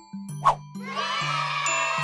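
Cartoon sound effects over light background music: a short pop about half a second in, then a bright, sparkling chime that rings on, the kind that marks an item ticked off the list.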